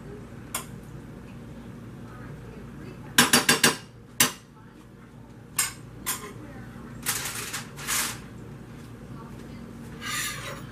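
Metal spoon clinking and scraping against a baking pan and a bowl as meatballs in sauce are spooned out: a single click early, a quick run of four or five clinks a little past three seconds in, a few single clinks after, and two longer scrapes near the end.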